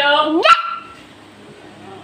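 A voice calling the name "Ela" once, in a high pitch that rises and is cut off sharply about half a second in.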